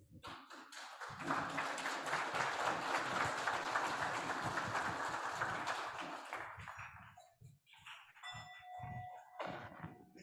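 About five seconds of dense, crackling noise that fades out, then a bell-like ring with several overtones sounds near the end, like a chime struck to open a moment of silent reflection.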